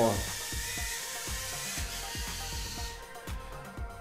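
Mini quadcopter's small electric motors and propellers whirring in a high hiss as it sets down, cutting out suddenly about three seconds in when the motors switch off after touchdown. Background music with a steady beat runs underneath.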